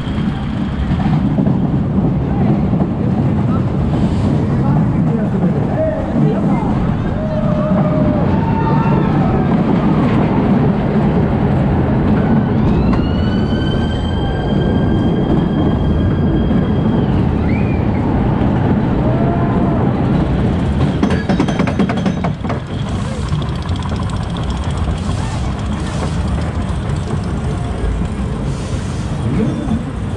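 SBF Visa family roller coaster train running along its steel track: a steady rumble of wheels with fairground crowd voices mixed in. About halfway through, a high-pitched squeal rises and holds for about four seconds.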